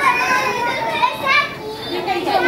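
High-pitched children's voices calling out and chattering, with no clear words.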